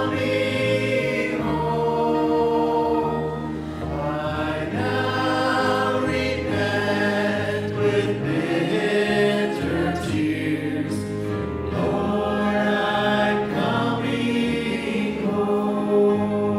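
Church worship team singing an invitation hymn, several voices together into microphones over instrumental accompaniment, holding long notes.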